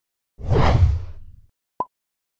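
Logo-intro sound effect: a whoosh with a deep low end that swells about half a second in and fades away over about a second, followed near the end by one short, sharp click.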